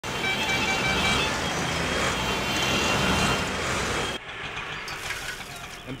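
Busy city street traffic noise with a series of short horn toots in the first second or so. The noise drops away abruptly about four seconds in, leaving quieter background noise.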